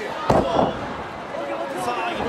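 One sharp smack of an in-ring wrestling impact about a third of a second in, followed by the arena crowd shouting and calling out.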